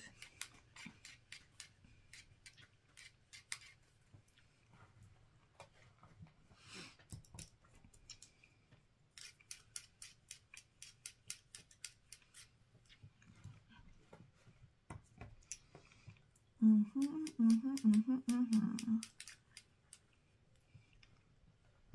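Makeup brushes being cleaned, swiped back and forth over a brush cleaner in runs of quick scratchy strokes, several a second. Near the end a woman hums for a couple of seconds.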